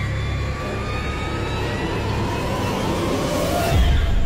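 A deep, steady rumble with faint slowly gliding tones above it, in the manner of a horror clip's soundtrack. It swells and ends in a heavy low boom just before the end.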